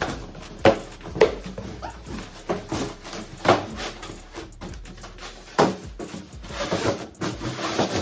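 A cardboard moving box being unfolded and folded into shape: several sharp slaps and knocks of cardboard, with scraping and rustling of the flaps in between.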